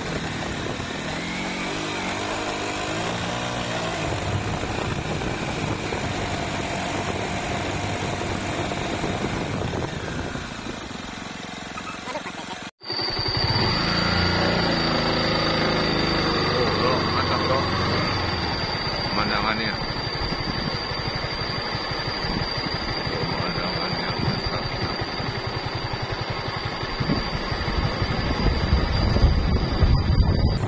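A small motorcycle engine running on a ride, its pitch rising and falling with the throttle. It cuts out briefly about halfway through, and after that a steady high-pitched whine is heard over it.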